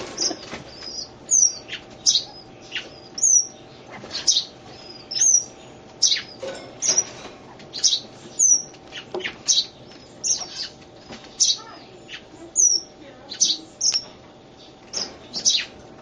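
Bird chirping: short, sharp high-pitched calls repeated about one or two a second, some sweeping down in pitch, over a faint steady hum.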